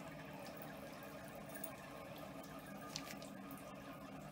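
Bathtub tap running a thin stream of water into the tub, a low steady splashing trickle, with a short click about three seconds in.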